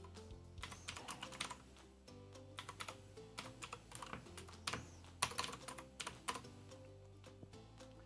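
Typing on a computer keyboard: irregular runs of quick keystroke clicks with short pauses between them as a shell command is entered.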